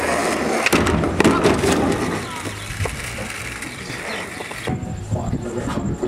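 Skateboard wheels rolling over asphalt, with a couple of sharp knocks about a second in.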